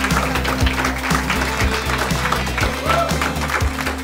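Audience applauding over walk-on music that has a steady bass beat, about two beats a second.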